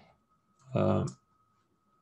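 A brief murmur from a man's voice, about half a second long, just under a second in, with a single computer-mouse click near its end. A faint steady high whine runs underneath.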